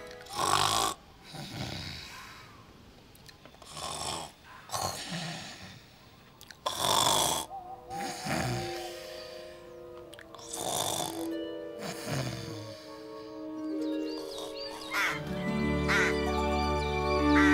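A girl snoring loudly in her sleep: about four long snores a few seconds apart, over soft background music.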